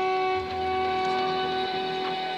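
Symphony orchestra holding a sustained chord, with a low bass note coming in about half a second in.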